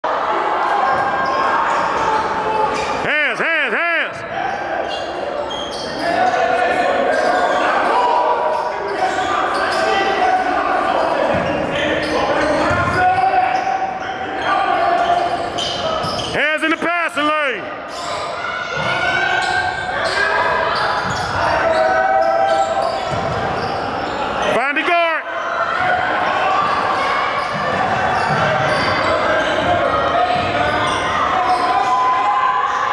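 Basketball game in a gymnasium: the ball bouncing on the hardwood court amid players' and spectators' voices echoing through the hall. Three brief warbling sounds come about three seconds in, halfway through and near the end.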